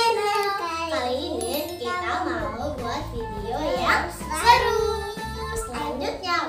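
Young girls' voices talking animatedly over background music.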